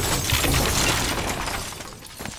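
Tail of a film explosion: flying debris and shattering that die away steadily over the two seconds.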